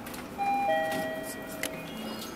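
Mitsubishi AXIEZ elevator's arrival chime sounding just after the down call button is pressed: two notes, a higher then a lower one, fading over about a second, with a light click near the end.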